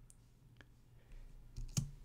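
A few faint computer keyboard keystrokes over quiet room tone: one light click about half a second in, then two sharper clicks close together near the end.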